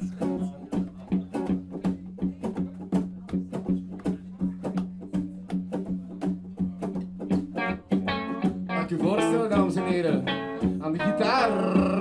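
Live band playing a song's opening: a guitar plucked in an even rhythm, about three strokes a second, over a steady low held note. About eight seconds in the sound grows fuller and louder, with pitches that bend up and down.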